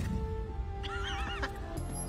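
TV episode soundtrack: a low rumbling musical score with steady held tones. About a second in, a brief high wavering cry sounds.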